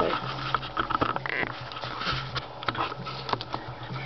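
Handling noise from a camera being set down on a newspaper-covered table: scattered light taps, clicks and paper rustles over a low steady hum.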